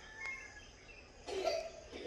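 Quiet room tone with faint, thin high chirping in the background, and a short breath-like sound about a second and a half in.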